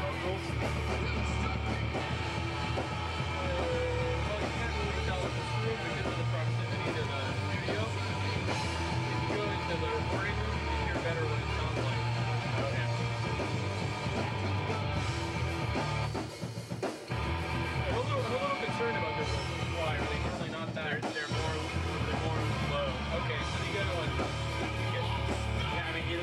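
Noise rock band playing live: distorted electric guitar, drum kit and vocals sung into a microphone, loud and dense throughout. There is a short drop-out in the playing about two-thirds of the way through.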